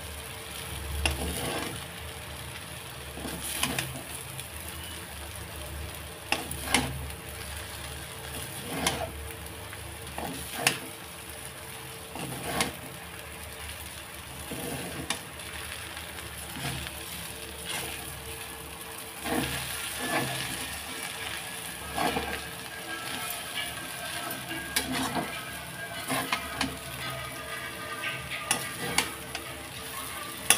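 A spatula stirring and tossing chow mein noodles in a kadhai, scraping and knocking against the pan every second or two, over a low steady sizzle.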